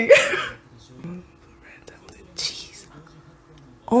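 Faint, low male dialogue from an anime playing quietly in the background, with a short breathy hiss about two and a half seconds in, after the tail of a spoken word at the very start.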